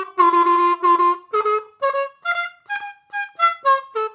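Diatonic harmonica played with a staccato, tongue-cut attack for bending practice. Three short notes sound at one pitch, then about eight quicker separate notes step up and down in pitch, each cut off with a brief gap.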